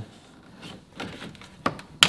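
Plastic dashboard trim panel being pulled loose by hand against its retaining clips: faint creaks and small clicks, with one sharp click near the end.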